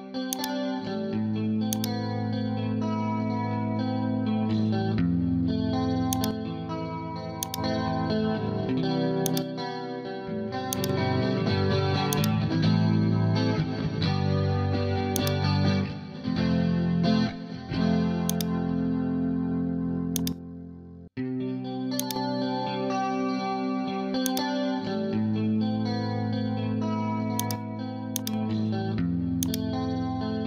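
Clean electric guitar recording playing back through a compressor plug-in that is being bypassed and switched back in while its make-up gain is set to match the original level. The passage cuts out briefly about 21 seconds in and starts over.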